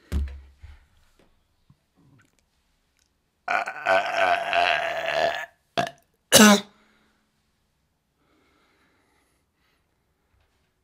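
A man belching, one long, rough belch lasting about two seconds, followed by two short vocal bursts. There is a low thump at the very start.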